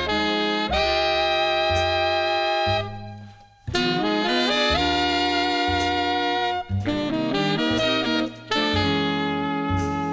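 Jazz band playing, with saxophone and trombone holding sustained chords over bass and drums and a few cymbal crashes. The band breaks off briefly about three seconds in, then comes straight back in.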